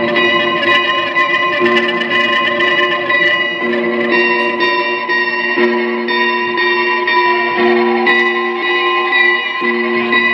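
Two electric guitars played live through effects pedals in a noise improvisation: layered sustained, processed tones, a steady high drone over a low note that sounds and drops out every second or two, with scattered picked attacks.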